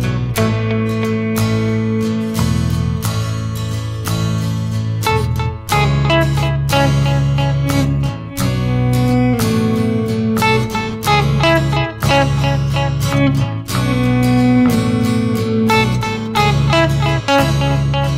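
Semi-hollow electric guitar playing an instrumental piece over a one-man-band backing with sustained low bass notes.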